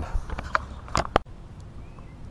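Light knocks and clicks from a hand handling the camera, the sharpest just after a second in, then the sound cuts off abruptly.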